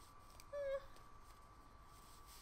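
A dog gives one short, high whimper about half a second in, over otherwise quiet room sound with a faint steady high-pitched tone.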